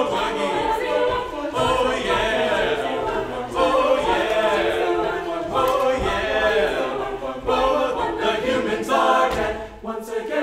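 A group of voices singing together a cappella, several parts at once, with a brief drop in level just before the end.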